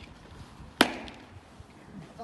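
A single sharp stamp of a drill boot on the tarmac parade ground about a second in, loud and short with a brief ring after it.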